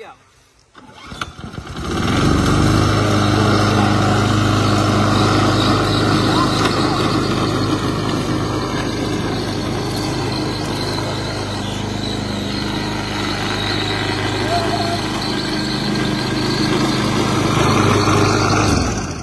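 Self-propelled walk-behind petrol lawn mower being pull-started after its primer bulb was pumped. It catches about two seconds in and then runs steadily.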